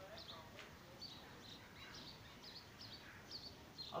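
Faint, repeated chirps of small birds in the background, a short chirp every half second or so, over a near-silent room.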